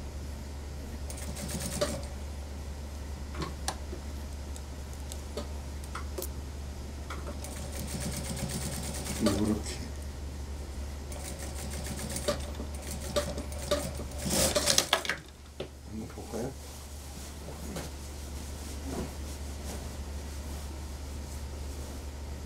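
Computerised industrial single-needle sewing machine stitching a suit sleeve into the armhole in several short runs, over a steady low hum.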